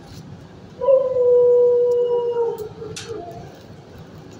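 A dog gives one long, steady howl of about two seconds, starting about a second in, followed by a short sharp click.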